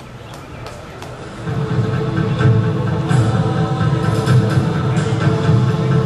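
Music with steady held tones over a low pulsing band, getting louder about one and a half seconds in.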